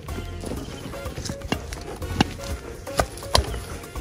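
Background music, with a few irregular thuds of footsteps as a child runs through grass.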